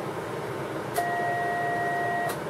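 A two-tone test signal from a transceiver's built-in two-tone generator, two steady tones, one low and one higher, comes on with a click about a second in and holds. It is the audio used to drive the linear amplifier for the test. Under it runs a steady rushing noise.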